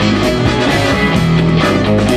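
Live rock-and-roll band playing, with electric guitar to the fore over a steady drum beat.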